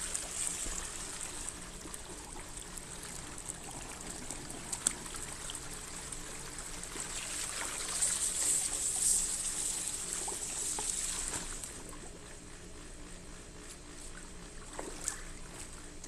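Water trickling and splashing from a Polaris automatic pool cleaner and its hose in a swimming pool, louder for a few seconds in the middle.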